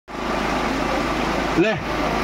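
Steady rushing background noise with a low hum underneath, ending in a short spoken word near the end.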